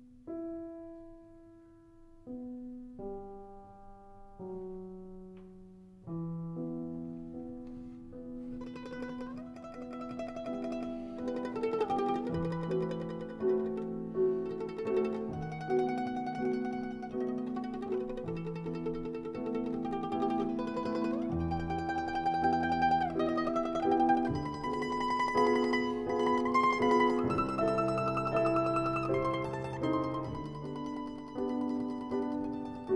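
Mandolin and piano duet playing slow, classical-style music. It starts with a few sparse, spaced notes and grows fuller and louder from about eight seconds in.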